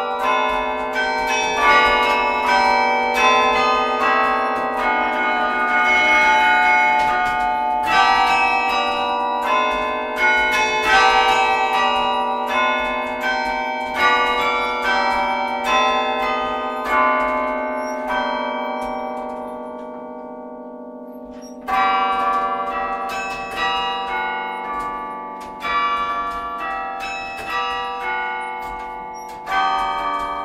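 Carillon being played from its baton keyboard: a tune of struck bells, each note ringing on and overlapping the next, over a low held tone. About two-thirds of the way through the notes die away for a few seconds, then playing resumes with a strong stroke.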